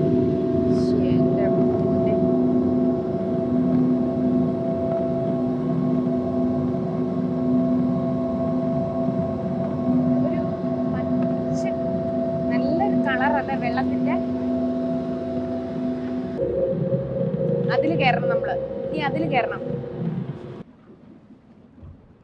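Tour boat's motor running at a steady hum, with passengers' voices over it now and then. The hum shifts to a different pitch about sixteen seconds in and drops away near the end.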